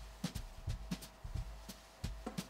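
Hands folding a pocket square: soft, irregular ticks and rustles of the cloth being handled, over a faint steady hum.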